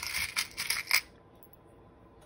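Small metal charms clinking together as fingers rummage through a compartment of a plastic organizer box, a quick cluster of light clinks in the first second.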